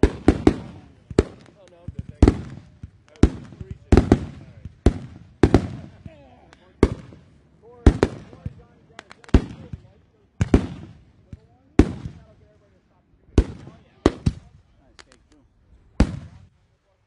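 Homemade firework cake with 3/4-inch inserts firing shot after shot: sharp bangs roughly once a second, sometimes two in quick succession, each trailing off in a short echo as the shells burst overhead.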